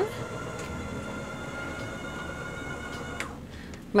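Electric motor of a motorhome's stairwell step cover running with a steady whine for about three seconds as the cover moves, then stopping.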